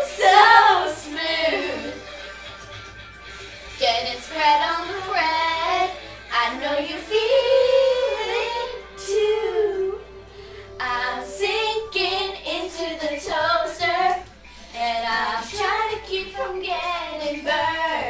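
Young girls singing a pop-song parody together, in phrases with short breaks and one note held for about two seconds near the middle.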